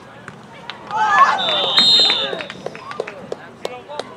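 Shouting voices from the sideline and crowd swell up about a second in, and a referee's whistle sounds for about a second in the middle, blowing the play dead. Scattered sharp knocks are heard throughout.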